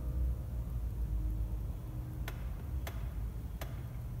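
The final chord of a grand piano dying away over a low steady room rumble, then three sharp clicks a little over half a second apart in the second half.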